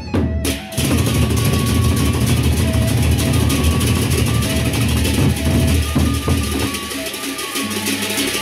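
Gendang beleq ensemble playing: large Sasak barrel drums beaten hard together with clashing hand cymbals. The full ensemble comes in a little under a second in, a dense, loud clash over deep drumming, after a brief melodic line with separate strikes.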